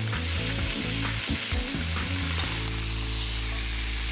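Sliced fennel and shallots sizzling steadily in hot olive oil, just added to the pan.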